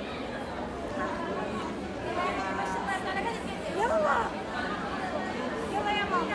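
Crowd chatter: many voices talking over one another in a crowded hall, with one voice calling out louder about four seconds in.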